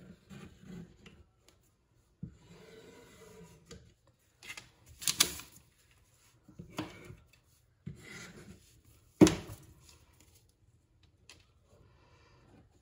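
Thin laser-cut maple plywood pieces being handled and pressed into place on a crate: wood rubbing and scraping, with about four sharp wooden knocks, the loudest in the last third.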